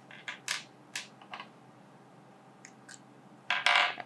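Small plastic fountain pen ink cartridges and pen parts clicking and tapping as they are handled and set down on a table: four or five sharp clicks in the first second and a half, a few faint ticks later, and a brief louder rush of noise near the end.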